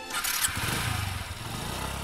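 A motorcycle engine starts with a short burst of noise and runs as the bike pulls away, its low engine note fading near the end.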